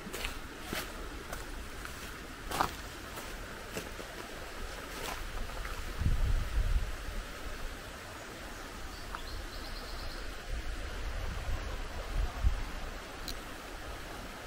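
A shallow river running over rocks, a steady rush of water, with footsteps clicking on the stony bank now and then. There are low rumbles of wind on the microphone around the middle and near the end.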